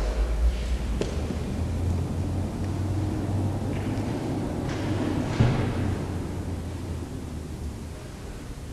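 Low steady rumble of room noise, with faint rustling and a single soft knock about five seconds in as a book is put away at a lectern.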